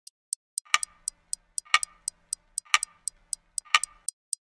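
Clock ticking: light, sharp ticks about four a second, with a louder, ringing tick once every second.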